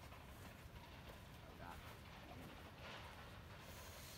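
Near silence: faint outdoor background, with a few faint, indistinct voice-like sounds.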